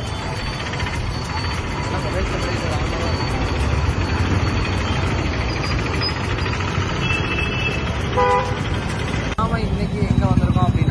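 Street traffic: engines of cars and motor scooters running and passing, with voices in the background. A vehicle horn toots briefly near the end.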